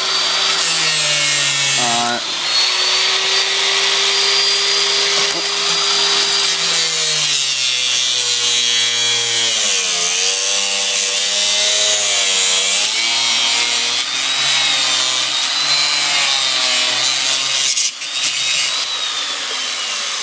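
Angle grinder cutting through a dirt bike's drive chain: a loud, continuous whine with a grinding hiss. Its pitch holds steady at first, then wavers and dips repeatedly through the middle as the disc is pressed into the chain.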